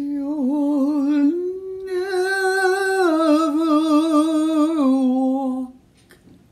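A solo voice sings a wordless closing phrase of long held notes with wide vibrato. The pitch steps up about a second in, then steps down twice before stopping shortly before the end.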